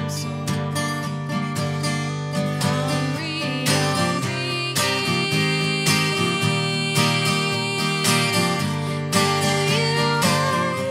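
A song played live: an acoustic guitar strummed in a steady rhythm, with a woman singing over it.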